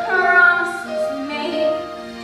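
A girl's solo singing voice in a stage musical number, holding long sung notes with musical accompaniment.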